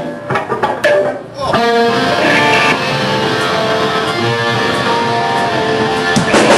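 Electric guitar starting a song through an amplifier: a few short choppy strums, then from about a second and a half in a held chord left ringing.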